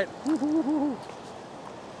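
A man's voice gives three short rising-and-falling hooted or hummed notes in the first second, like a gleeful "hoo-hoo-hoo". After that only the steady hiss of surf washing over the rock shelf remains.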